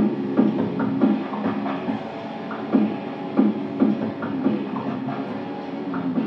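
Electric guitar played live over a dubstep backing track, with sustained low tones and sharp accented notes every half second or so.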